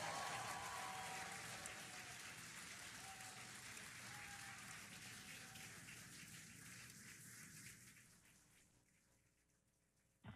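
Applause that slowly dies away to near silence.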